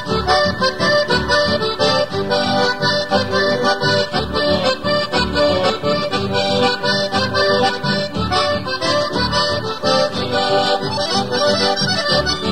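Chamamé music: accordion playing the instrumental introduction of the song, with guitar and double-bass accompaniment keeping a steady beat.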